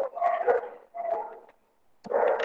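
A dog barking twice, two short barks about a second apart.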